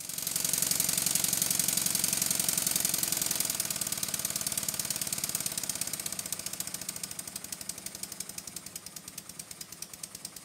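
Stuart 7A single-cylinder vertical model steam engine running on compressed air, with rapid regular exhaust beats. It runs fast and loud at first, then eases off about three and a half seconds in and slows until the separate beats can be heard, about three a second near the end.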